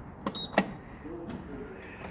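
Lift call button pressed: two sharp clicks with a short high beep between them, then a quieter low hum.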